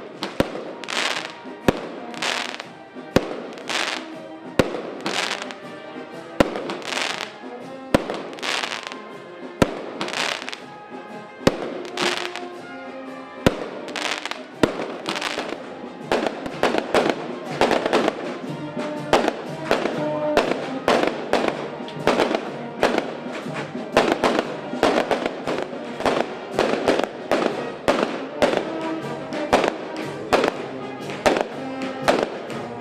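Fireworks going off in a string of loud bangs, at first every second or two, then from about halfway through in a fast, dense crackling volley.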